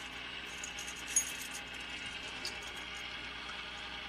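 Faint steady hiss with a single sharp click about a second in; no engine is running yet.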